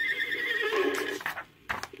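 Recorded horse whinny played from a read-along book-and-record: one call that rises at the start and holds for about a second and a half. It is the record's signal to turn the page. A sharp click follows near the end.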